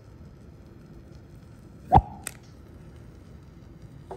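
Hydrogen gas from magnesium reacting with sulfuric acid igniting at the mouth of a glass graduated cylinder: a single sharp pop about halfway through, with a brief ring from the tube.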